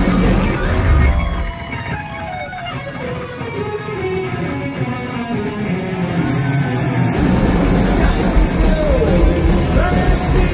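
Electric guitar solo in a live heavy metal band performance. About a second and a half in, the drums and bass drop away and leave the lead guitar playing alone with bending notes. The full band comes back in about seven seconds in.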